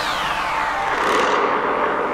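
Psytrance music at a transition: a synthesized sweep effect falls steadily in pitch over the first second and a half, with a second swell of hiss about a second in, over steady synth tones.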